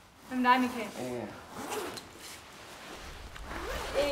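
A brief voice in the first second, then about two seconds of rustling, with a low rumble coming in near the end.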